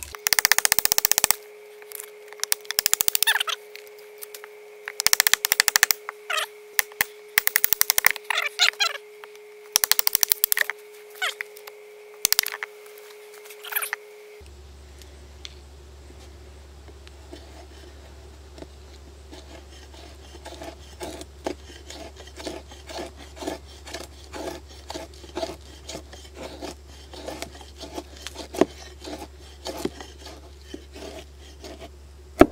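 Large chopper knife chopping alligator juniper to split it: loud blows in bunches through about the first half. Then a softer, rhythmic scraping, about two strokes a second, as the blade carves shavings from the split wood.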